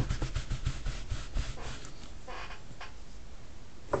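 Large rubber stamp being scrubbed clean, with quick back-and-forth rubbing strokes, several a second, that fade out about a second and a half in.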